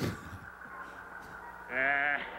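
A short laugh at the start, then a steady low hum with a faint held tone from the film soundtrack. Near the end a voice starts up loudly with a wavering, quavering pitch.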